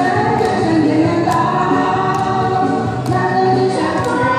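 A man and a woman singing a duet through microphones over a backing track, with long held notes and a light percussion tick about once a second.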